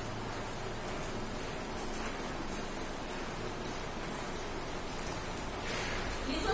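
A steady, even hiss of noise with no distinct events.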